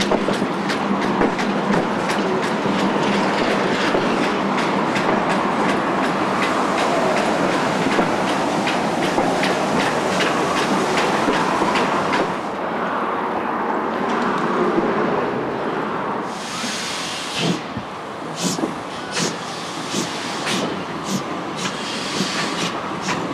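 Passenger carriages of a steam-hauled train running along the line, wheels clicking rapidly over the rail joints over a steady rumble. The clicking fades for a few seconds about halfway through, a brief hiss comes near the three-quarter mark, then the clicks return more spaced out.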